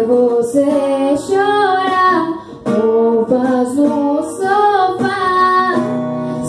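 A young woman singing a melody into a microphone, accompanying herself on a strummed acoustic guitar, with a brief break between sung phrases about two and a half seconds in.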